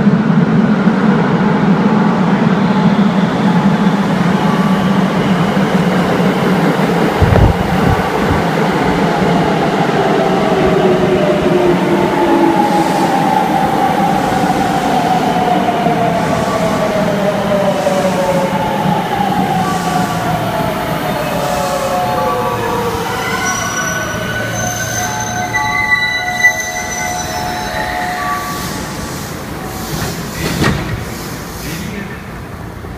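An electric commuter train pulls into the station and brakes to a stop. A rumble from the approach gives way to the traction motors' whine falling steadily in pitch as it slows. Near the end there is a brief high squeal as it comes to rest.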